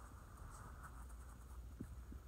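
Faint rustling and light scratching of a hand moving over mattress fabric, with a few small ticks near the end, over a low steady hum.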